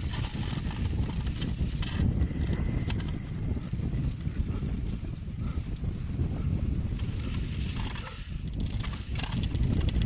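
Wind buffeting the microphone as an uneven low rumble, with a few faint clicks in the first few seconds.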